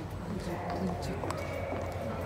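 Footsteps on the hard floor of a long undersea pedestrian tunnel, an uneven patter of sharp steps, with indistinct voices of walkers and a steady low hum underneath.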